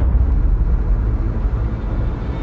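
A deep, steady rumbling drone that starts abruptly, opening the podcast's outro.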